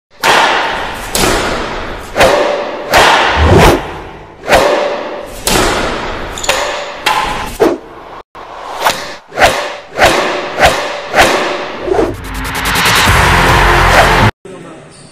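Cinematic intro sound design: a series of about fifteen heavy hits, each sharp at the start and dying away, with a few faint held tones between them. In the last two seconds a swell builds up loud and dense.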